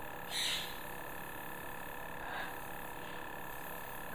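Luminess airbrush makeup compressor running with a steady hum of several tones, with a brief hiss about half a second in.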